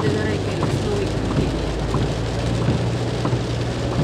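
Heavy rain falling on a car's windscreen and body, heard from inside the moving car over a steady low engine and road hum.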